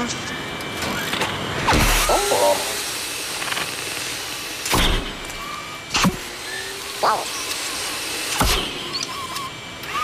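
Animated robot sound effects: short whirring servo-motor sounds and gliding electronic chirps, broken by about five sudden loud bursts.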